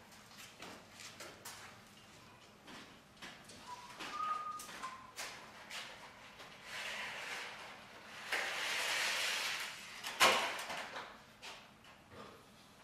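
Hands and tools working on a convertible top frame: scattered clicks and small knocks, a brief squeak about four seconds in, two stretches of rasping rustle, and a sharp knock near ten seconds in that is the loudest sound.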